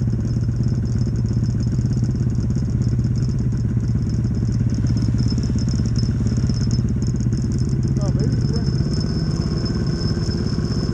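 Snowmobile engines running steadily at idle, heard close from the sled carrying the camera. A brief rising chirp cuts in about eight seconds in.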